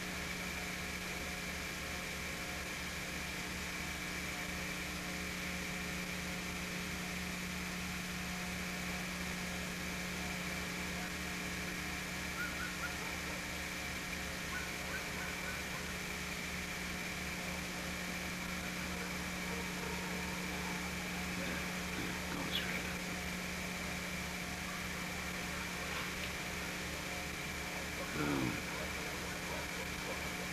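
Steady hum with a higher whine and a hiss underneath, unchanging throughout, with a few faint brief sounds about twelve and twenty-two seconds in.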